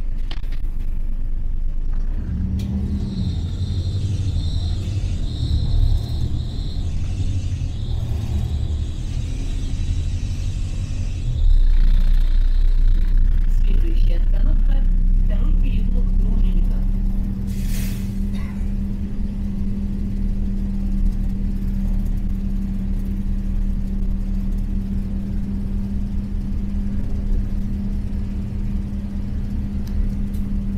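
Inside a moving LiAZ-4292.60 city bus: engine and road rumble fill the cabin. About eleven seconds in the low rumble grows louder for several seconds as the bus gets under way, then settles into a steady hum. A single sharp click comes a little later.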